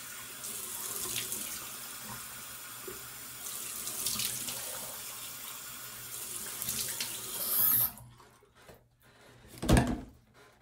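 A bathroom sink tap running while a face is rinsed under it, with a few louder splashes; the water is shut off abruptly about eight seconds in. A loud thump follows near the end.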